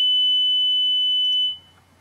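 Steady 3 kHz sine test tone from a tone generator, played at full volume through a loudspeaker. It cuts off about one and a half seconds in.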